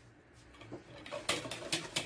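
Wire whisk beating cake batter in a bowl: after a quiet first second, a quick run of clinks and scrapes as the wires strike the bowl.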